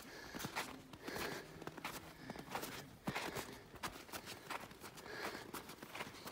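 Footsteps in snow: a series of steps at a walking pace.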